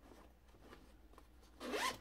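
A zipper pulled in one short rasp about one and a half seconds in, after faint rustling from handling.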